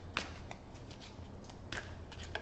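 A deck of tarot cards handled and shuffled by hand: a few soft card clicks, one soon after the start and a couple near the end.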